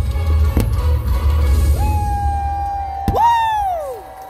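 Fireworks-show soundtrack music played over loudspeakers, with a deep throbbing bass for the first three seconds. A held high note comes in about two seconds in, then a sharp bang about three seconds in, followed by a tone that slides down in pitch as the music quiets.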